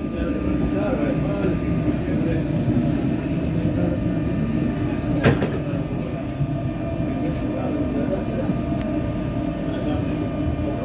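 Renfe Cercanías commuter train running through an underground station, heard from inside the car as a steady rumble of wheels and running gear. A single sharp knock comes about five seconds in.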